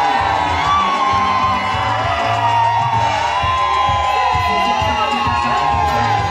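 Music playing with a steady bass line, under a crowd of women cheering, shouting and whooping, with long high held cries.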